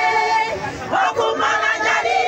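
A large crowd of women cheering and shouting, many voices held on long high cries, with a brief dip in loudness a little before the middle.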